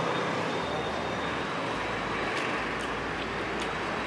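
Steady urban street background with road traffic noise: an even hum of passing vehicles with no single distinct event.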